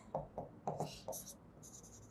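Stylus writing on the glass of an interactive touchscreen display: a quick series of short, faint scratches and taps as a word is handwritten.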